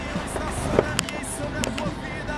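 Road and engine noise inside a moving car's cabin, with a few sharp clicks and knocks as the handheld camera is swung about.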